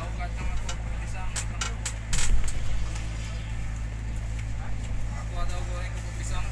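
Steady low hum of a fast passenger ferry's machinery, heard inside the passenger cabin, with passengers chattering in the background. A few sharp clicks or knocks come about two seconds in, the loudest of them then.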